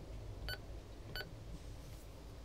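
Uniden UM380 marine VHF radio giving short keypress beeps, about two-thirds of a second apart, as its channel-down key is pressed. Each beep confirms one step down the channel list.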